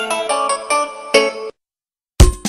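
Programme title jingle: a quick melody of short pitched notes that stops abruptly about one and a half seconds in, leaving silence.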